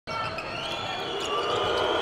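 Basketball being dribbled on a hardwood court over steady arena crowd noise.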